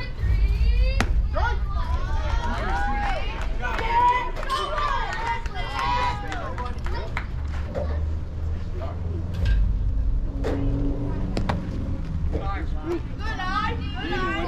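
Background voices of players and spectators calling out and chattering, over a steady low rumble, with a sharp knock about a second in.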